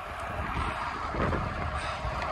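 Steady rush of wind over the microphone of a camera riding on a road bike at speed, with a low rumble of road noise beneath it.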